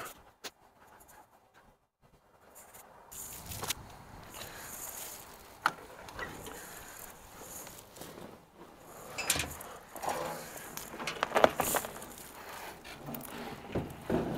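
Scattered clicks, clanks and light metallic rattles of a truck seat and its metal hardware being worked loose and lifted out of the cab, most of them in a cluster near the end. It opens with about two seconds of near silence.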